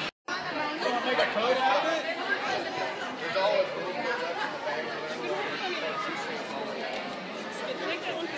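Overlapping chatter of many people talking at once in a large hall. The sound drops out for a moment at the very start.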